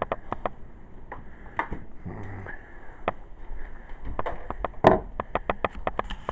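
Handling noise from a handheld camera being moved about: irregular clicks, knocks and rustling, with one louder knock about five seconds in.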